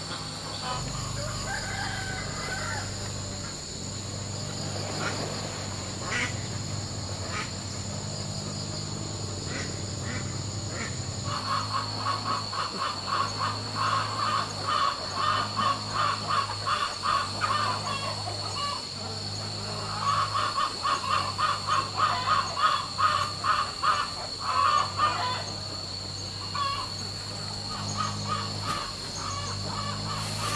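A flock of domestic ducks quacking in rapid runs, in two long spells in the second half, over a steady high buzz of insects.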